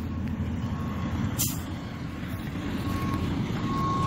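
Semi truck's reverse warning beeper sounding a single steady-pitched tone on and off, faint at first and clearer near the end, over a low engine rumble. One sharp click about one and a half seconds in.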